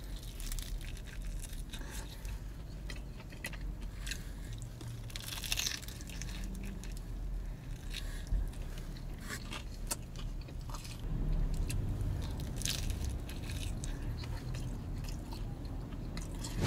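Close-up biting and chewing of a super crispy Detroit-style pizza crust: scattered small crunches and wet mouth sounds over a steady low hum.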